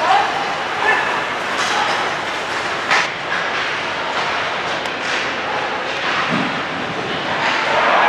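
Live ice hockey play in an arena: skates scraping on the ice, stick and puck clacks and scattered spectator voices over a steady hall rumble. One sharp crack about three seconds in, such as a puck hitting the boards.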